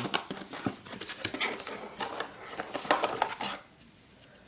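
Cardboard box and packaging being handled as the box flaps are opened: a run of light knocks, scrapes and rustles that stops about three and a half seconds in.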